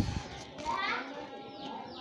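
A child's voice calls out briefly in the background about half a second in, high and rising, over low room noise. A short knock comes at the very start.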